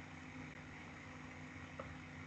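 Faint room tone: a steady low hum with hiss, and one brief faint tick near the end.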